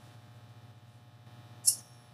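A steady low hum runs underneath. Near the end comes one short, sharp, high-pitched scrape as a screwdriver works a small screw on the plastic fan housing.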